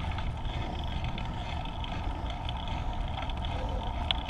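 Citroën Space Scooter rolling along: a steady, even rumble of wheels and ride noise with wind on the microphone.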